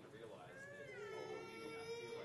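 A young child's voice in one long, faint cry that rises in pitch and then holds steady, over faint talking in the background.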